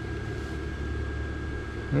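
Steady low hum of the inflatable decoration's electric blower fan running, with a thin steady high whine over it.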